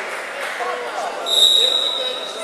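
Referee's whistle blown in one long, steady, high blast that starts just over a second in, over the chatter of spectators in a large hall.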